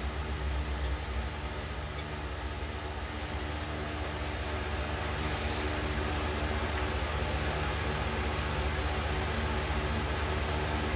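Steady background noise with no speech: a low hum and hiss, with a faint, evenly pulsing high tone throughout.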